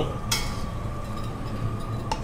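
A metal spoon clinks once against a stainless-steel pot about a third of a second in, over a steady low hum.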